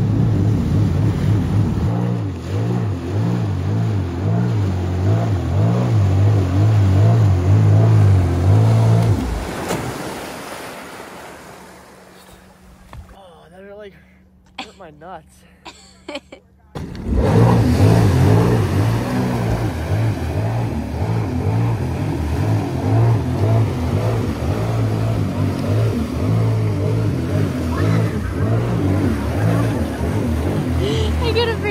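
Sea-Doo jet ski engine running under throttle as the craft is stood up nose-high, with a pulsing, wavering low hum; about nine seconds in the sound fades away to a quiet stretch, and about seventeen seconds in the engine comes back abruptly at full loudness and keeps running.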